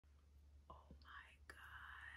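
Near silence: a woman's faint whispered, breathy voice starting about a second in, over a low steady hum.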